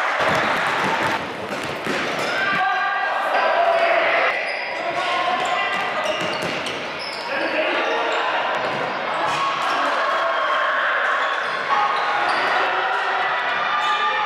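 Futsal ball being kicked and bouncing on a sports-hall floor, a string of sharp knocks that echo in the hall, over constant shouting and chatter from players and spectators.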